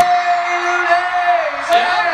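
A man singing a long, steady held note for about a second and a half, then starting another sung phrase near the end: an improvised a cappella theme-song vocal.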